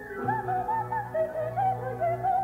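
Classical orchestral music in a live performance: a soprano voice sings a quick run of short, wavering, ornamented high notes over a low held note in the orchestra.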